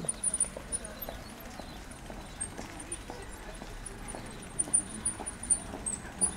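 Footsteps on paving stones, a run of light, irregular clicks, heard over low street background.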